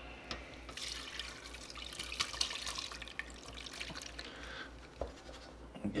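Hot rendered duck fat poured from a pot through a fine metal mesh strainer, a splashing, trickling pour with small taps as the cracklings drop into the mesh. It starts about a second in and dies away near the end.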